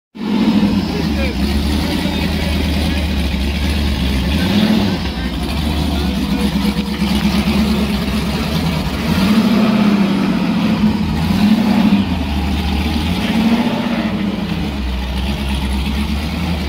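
A rock buggy's 650 hp LS1 V8 revving up and down in repeated bursts under load as it crawls up a rock ledge.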